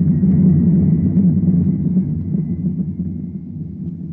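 Low rumbling drone, a sound effect in an old radio drama, loudest in the first half and slowly fading toward the end.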